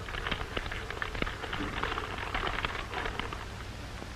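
Stiff paper rustling and crackling as a note is handled and unfolded, a quick run of small crackles over the steady low hum of an old film soundtrack.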